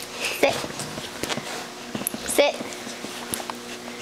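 A woman's voice telling a dog "Sit" twice, about half a second in and again about two and a half seconds in, with a few faint clicks between.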